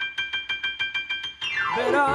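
Digital piano playing a high chord repeated rapidly, about six or seven strikes a second, then a quick descending run down the keyboard near the end as a song begins.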